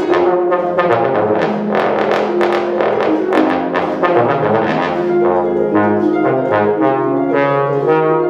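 Bass trombone and concert harp playing together. The harp plucks a steady stream of quick ringing notes under the bass trombone's sustained melodic line.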